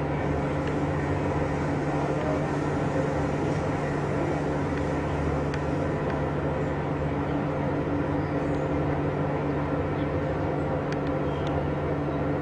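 A steady mechanical drone with an unchanging low hum, like an engine or machine running at constant speed.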